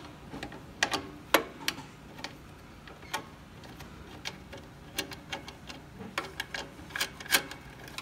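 Irregular light metallic clicks and clinks of an open-end wrench working the hex nut on the threaded end of an Atlas AT-250 trap's steel cable, as the nut is adjusted along the threads against its steel bracket.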